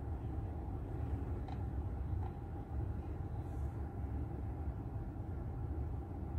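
Low, steady rumble of a car heard from inside the cabin, with a couple of faint clicks about a second and a half and two seconds in.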